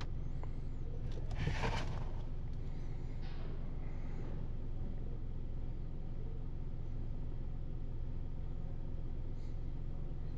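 A car engine idling, a steady low hum, with a brief rustling noise about a second and a half in.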